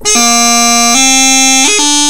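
Highland bagpipe practice chanter playing three held notes that rise by step. A short, sharp G grace note marks the start and each change of note.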